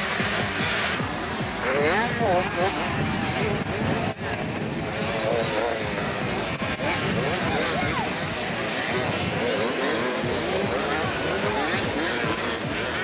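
A pack of small two-stroke youth motocross bikes racing, their engines revving up and down in overlapping rising and falling pitches, with a brief break about four seconds in. Music plays underneath.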